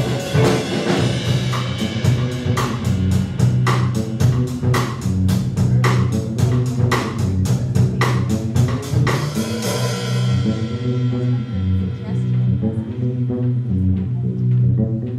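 Live funk band playing an instrumental with drum kit, electric guitars and bass guitar. The drums beat about four strokes a second, then drop out about ten seconds in, leaving bass and guitar playing on.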